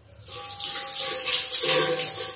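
A brief rush of running water, building over about half a second and fading out near the end.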